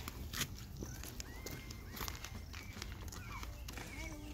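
Footsteps on a dirt path, irregular soft crunches and knocks, with a few short bird chirps and a low steady rumble underneath.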